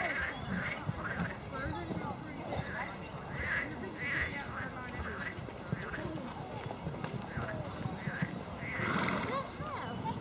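A horse's hooves beating on a sand and gravel arena surface as it canters round a show-jumping course, with voices in the background.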